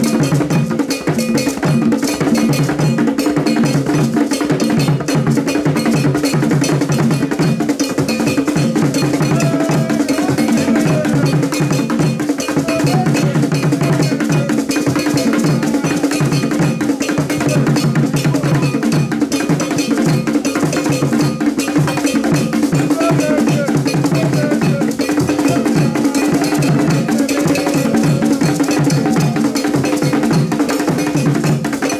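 Traditional Ghanaian drum ensemble playing a fast, driving rhythm on hand drums, with a metal cowbell-like bell ringing a steady pattern over it. The rhythm runs unbroken.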